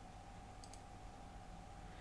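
Faint computer mouse clicks, two close together under a second in, over quiet room tone.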